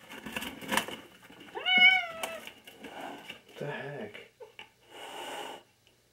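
A domestic cat meows once, loudly, about two seconds in. The call rises in pitch and then levels off, amid rustling and handling noises close to the microphone.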